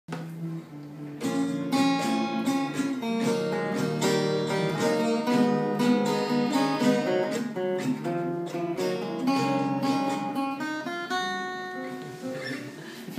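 Solo acoustic guitar played with the fingers: a melody of plucked notes over a moving bass line. It starts softly, grows fuller about a second in, and ends on a note left ringing.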